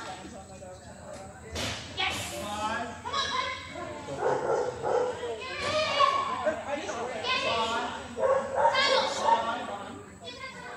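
Shetland sheepdog barking repeatedly while running an agility course, mixed with people's voices and a laugh, echoing in a large hall.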